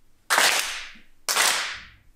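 A kneeling group clapping in unison twice, about a second apart, each clap sharp and dying away over about half a second in the room: the ritual Shinto handclaps (kashiwade) of reverence before the dojo's shrine.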